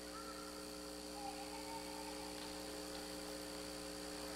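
Steady electrical hum from a live handheld microphone and sound system, several even tones over faint room noise.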